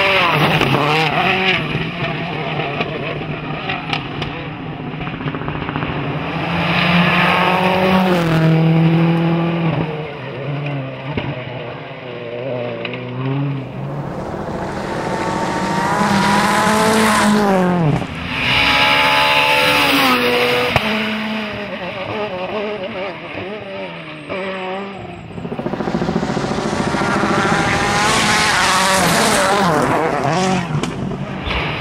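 Rally cars on a gravel stage, a Citroën C4 WRC among them, passing at speed one after another. The engines rev up and drop through gear changes, and the pitch falls as each car goes by, over the noise of tyres on gravel.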